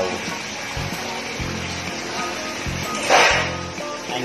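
Background music, and about three seconds in a short loud rush as a trayful of string beans (sitaw) slides off a metal tray into a wok of pork simmering in coconut milk.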